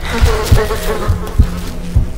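A fly buzzing over low, heartbeat-like thumps, with background music.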